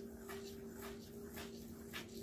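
Fingers sweeping through fine sand on a metal plate: soft, short scratchy strokes about twice a second, over a faint steady low hum.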